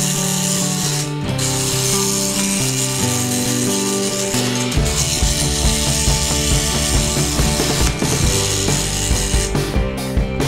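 Background music with a steady melody. From about halfway through, rapid ratchet-like clicking joins it, typical of a toy bus's pull-back motor being wound or its wheels being rolled on the table.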